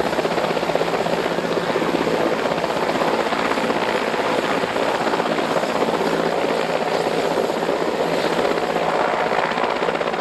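Mil Mi-17 (Mi-8 family) twin-turbine transport helicopter hovering low, its engines and rotor running loud and steady, with the hiss of rotor downwash blasting the water surface.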